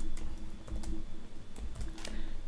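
Computer keyboard being typed on: a handful of separate keystrokes, spaced unevenly.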